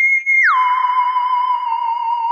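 A steady, high whistle-like tone that drops suddenly in pitch about half a second in, then holds at the lower pitch with a slight waver.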